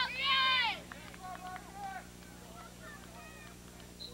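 A loud, drawn-out shout in the first second, then fainter scattered calls.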